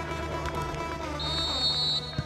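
Background music, then a little over a second in a referee's whistle blows one long, high blast for kick-off.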